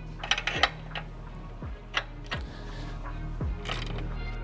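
Sharp metallic clicks of a hand ratchet wrench loosening the heat-shield bolts and O2 sensor on a car's exhaust manifold and catalytic converter: a quick cluster about half a second in, single clicks about a second and two seconds in, and another cluster near the end. Background music with a steady beat plays underneath.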